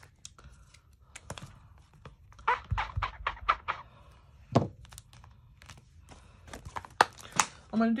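Rubber stamps on clear acrylic blocks being scrubbed and tapped on a stamp-cleaning pad in a hinged plastic case: scattered scuffs and plastic clicks, with a dull thunk about three seconds in.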